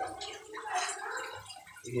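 Paratha sizzling and crackling in oil on a hot griddle (tawa) as it fries.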